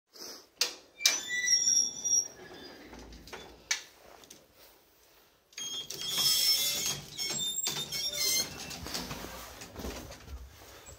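Collapsible steel lattice gates of an old lift being dragged shut by hand, clanking and rattling with short metallic squeaks. There is a first spell of knocks and squeaks near the start, then a longer spell of rattling from about halfway.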